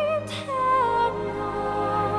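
Background music: a slow melody of long held notes with vibrato over a steady low drone.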